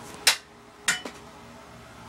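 A thrown small plastic Gogo's Crazy Bones figure hitting a wall of toy blocks: two sharp clacks, the first about a quarter second in and the second about half a second later.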